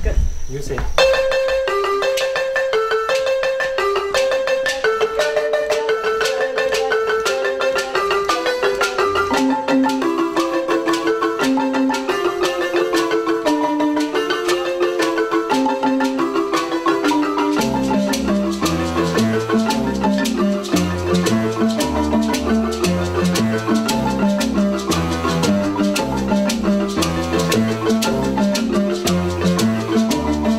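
Marimba ensemble playing an interlocking pattern of quick, repeated mallet notes that begins about a second in. Deep bass notes join the pattern a little over halfway through.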